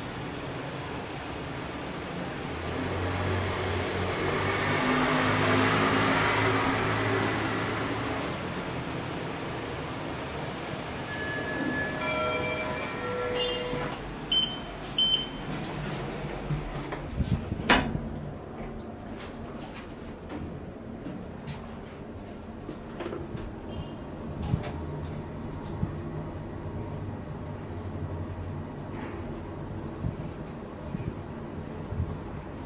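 Schindler 3300 machine-room-less elevator: a broad rushing swell as the car arrives and its sliding doors open, a few short electronic tones about twelve seconds in, then a sharp knock as the doors shut, and a low steady hum as the car travels.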